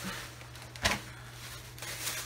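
One short knock about a second in, as a grocery item is set down on a table, over a steady low hum.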